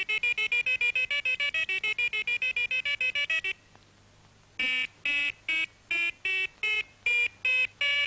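Electronic musical calculator playing a tune in beeps. A fast run of short notes, about seven a second, stops about three and a half seconds in. After a second's pause come slower notes of changing pitch, about two or three a second.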